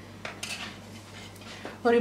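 A few light taps and clicks as a peeled boiled egg is set down among others in a glass bowl, egg and hand knocking against the glass.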